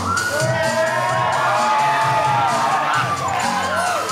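Loud dance music with a steady beat, with a crowd of young people cheering and shouting over it.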